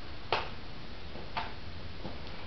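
Two sharp plastic clicks from a CD case being handled, about a second apart, the first the louder.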